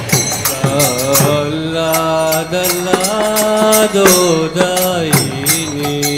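Devotional kirtan chanting: a voice sings long, held, slightly wavering notes over a steady metallic jingling beat of about three strokes a second.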